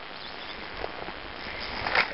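Steady hiss of flowing river water, with a couple of faint clicks.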